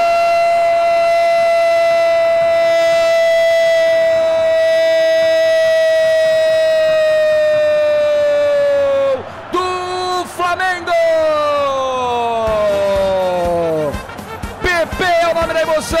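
A Brazilian football radio narrator's long goal cry, "goooool", held on one note for about nine seconds and slowly sinking in pitch. It then breaks into shorter shouts that slide downward. The cry marks a goal that has just been scored.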